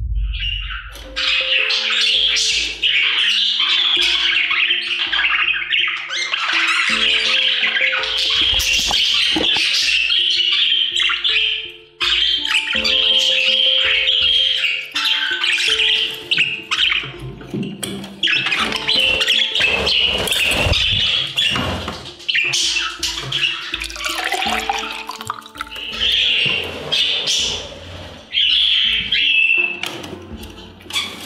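Budgies chattering and squawking, a continuous high scratchy warble, over background music with a steady beat.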